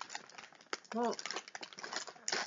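Crisp packet crinkling and crackling in the hands as it is pulled and twisted, a run of small irregular crackles; the packet is hard to get open.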